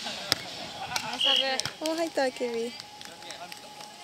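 A volleyball served with a single sharp hand slap about a third of a second in, followed by players calling out to each other.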